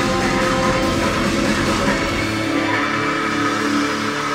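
Metal band playing, with guitar and drums. About two seconds in, the deep drums and bass drop out and held chords carry on.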